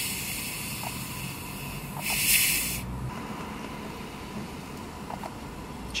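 Carbonation hissing out of a large plastic soda bottle as its screw cap is twisted loose: a loud hiss dies away at the start, then a second, shorter hiss comes about two seconds in, lasting under a second. A faint low hum and a few small clicks lie underneath.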